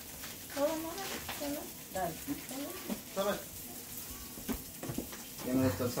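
Meat patties frying in oil in a pan, a steady sizzle under quiet talk.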